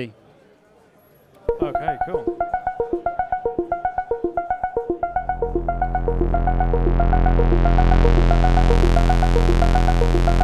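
Skald One four-voice analog polyphonic Eurorack synthesizer: about a second and a half in, a sequencer-driven voice starts a fast, even run of short notes. About five seconds in, held low notes swell in under it and the sound grows steadily brighter as a knob is turned on the panel.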